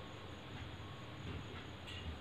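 Felt-tip marker drawing short tick strokes on paper, faint, over a low steady room hum, with one brief tap near the end.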